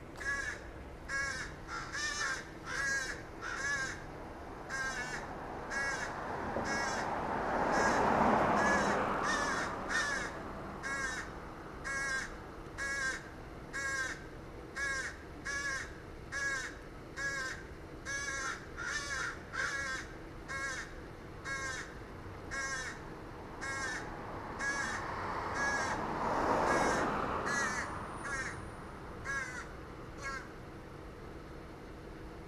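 A crow cawing over and over from a tree overhead, short calls about two a second without a break. Two louder swells of rushing noise rise and fall behind it, about a third of the way in and near the end.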